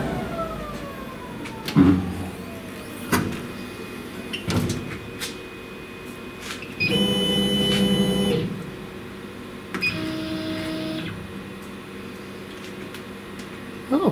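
CO2 laser engraver's gantry travelling off the work after a pass, its stepper motors giving two short steady whines, with a few sharp clicks and a tone sliding down over the first two seconds.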